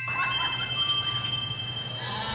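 Christmas song intro: bell-like chime tones ringing out and overlapping, held high notes sustaining.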